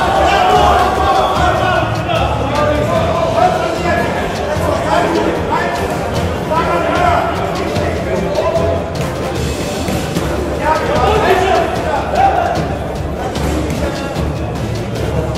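Voices calling out over music with a pulsing bass in a large hall, with occasional thuds of boxing gloves and feet in the ring.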